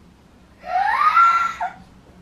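A young girl's excited squeal of delight, about a second long and rising in pitch, at the sight of her birthday presents.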